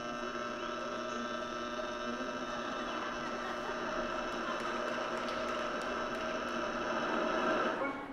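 Choir holding one long sustained chord, cut off together just before the end.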